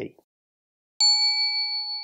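A single bell-like chime struck once about a second in, ringing on with a clear tone and slowly fading. It is an edited-in transition sound marking the start of a new section title card.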